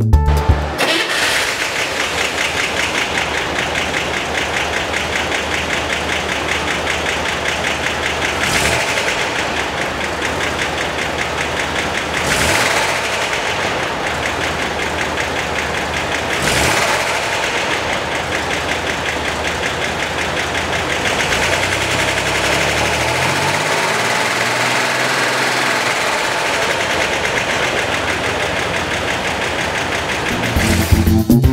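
1964 Chevrolet Corvair's air-cooled flat-six engine running steadily, with three short revs about four seconds apart.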